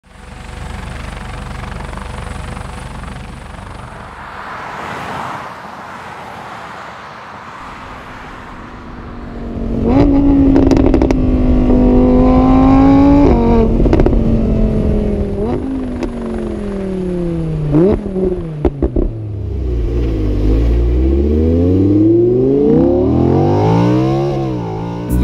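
Sports car engine, an Audi R8's V10, accelerating hard through the gears: the pitch climbs and falls back at each gear change, with a few sharp pops about eighteen seconds in and a long rising rev near the end. The first several seconds hold only a quieter noise that swells and fades.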